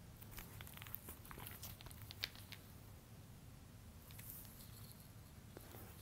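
Very faint rustling and a few light clicks from a boxed CD set's packaging being handled and turned over, with one slightly sharper tick a little after two seconds in.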